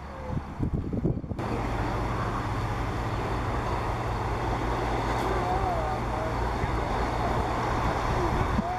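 Steady outdoor background noise with faint distant voices; about a second and a half in the noise jumps suddenly to a louder, denser level, as at an audio cut.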